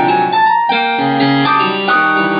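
Instrumental music with sustained notes changing several times a second. There is a brief drop about half a second in before new notes begin.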